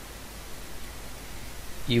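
Steady hiss with a faint low hum: the noise floor of the narration microphone between words.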